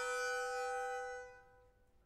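Harmonica holding one long, bright note that fades away about a second and a half in, leaving a short silence in the music.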